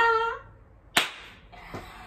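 The end of a woman's laugh, then a single sharp smack about a second in, like a hand slap, with a fainter knock shortly after.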